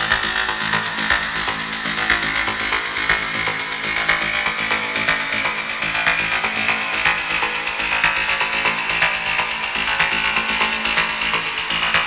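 Noise-style electronic music: a dense, harsh wall of noise with a rapid, fine-grained texture over steady low tones, and a bright band that rises slowly in pitch.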